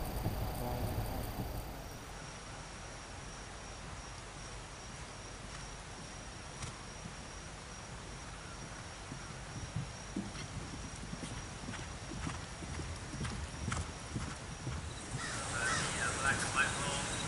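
Hoofbeats of a horse galloping on grass turf: a run of dull, irregular thuds that grows from about ten seconds in.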